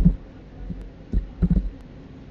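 Dull thuds of keys being struck on a computer keyboard: one at the start, then a quick few about a second and a half in.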